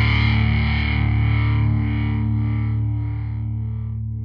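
Death metal's distorted electric guitar chord, with a heavy low end, held and slowly dying away as the song ends.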